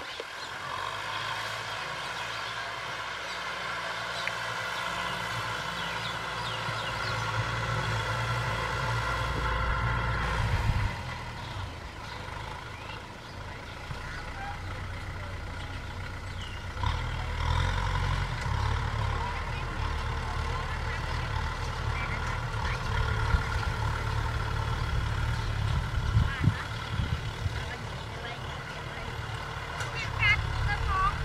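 Four-cylinder diesel engine of a Kubota M6040SU tractor running under load while pulling a disc plough through soil. It grows louder over the first ten seconds, drops away sharply about a third of the way in, and comes back up a little past halfway.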